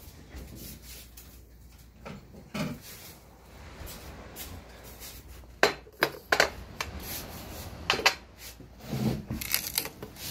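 Sharp clicks and knocks of a small glass champagne bottle and a plastic flute being handled and set down on a table, a run of them from about halfway through and a few more near the end.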